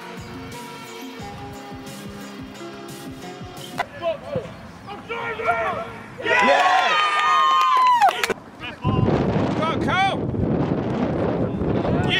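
Backing music for about the first four seconds, then a cut to loud men's shouts and cheers at a goal on an amateur football pitch, with a rough rushing noise under the shouting near the end.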